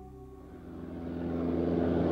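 Single-engine propeller airplane's engine, faint at first and growing louder over about a second as the plane comes toward the listener, then holding steady.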